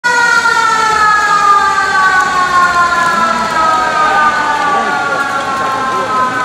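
Motor-driven stadium siren sounding one long, loud note whose pitch slowly falls as it winds down, with faint shouts from players underneath.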